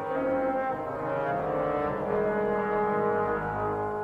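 Orchestral film score with loud brass playing sustained chords that shift slowly from one to the next.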